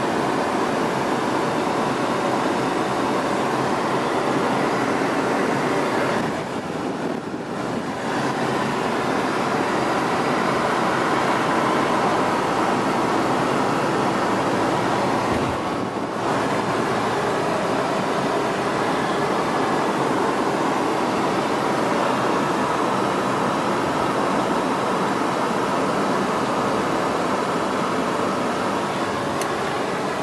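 Steady wind and road noise inside the cabin of a moving classic car, with the engine running under it. The noise eases briefly about six to eight seconds in and again around sixteen seconds.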